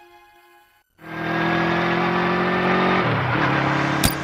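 Near silence for about a second, then a motor vehicle close by: loud, steady engine and road noise that starts suddenly, its pitch falling about three seconds in as it passes.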